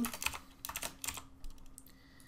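Typing on a computer keyboard: a quick run of keystrokes that thins out toward the end.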